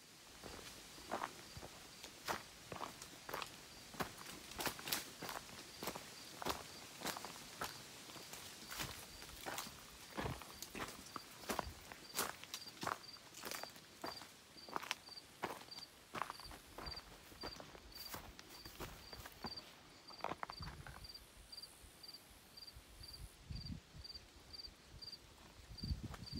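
Footsteps of a hiker walking over rocky, leaf-covered trail ground, about two steps a second. A faint high insect call pulses steadily behind them from a few seconds in.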